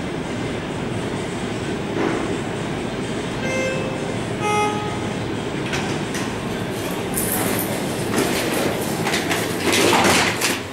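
Elevator arrival chime, two short tones about a second apart with the second lower, over a steady rumble of background noise. Then the KONE traction elevator's landing doors slide open, followed by scattered clicks, knocks and footsteps that are loudest near the end.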